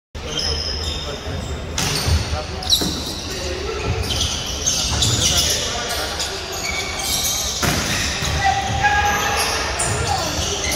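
Indoor volleyball rally on a wooden gym floor: several sharp hits of the ball and short high sneaker squeaks ring out in a large, echoing hall, over players' voices.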